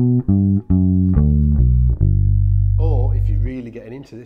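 Four-string electric bass guitar playing a descending G major arpeggio, one plucked note about every half second, stepping down to a low note that rings for about a second and a half.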